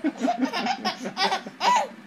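A baby laughing in a string of short, high bursts, ending in the loudest one, with an adult man laughing along. The laughter follows a playful 'woof woof' dog bark from the man.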